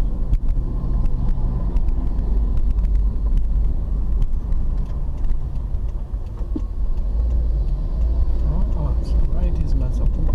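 Car interior heard from the dashboard while driving slowly in traffic: a steady low engine and road rumble throughout, with voices coming in near the end.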